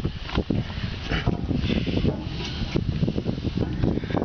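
Someone climbing a grain trailer's ladder with the camera in hand: irregular knocks and scuffs of feet and hands on the rungs over a steady low rumble of handling and wind noise.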